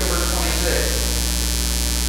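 Steady electrical mains hum, a low constant drone with fainter overtones above it.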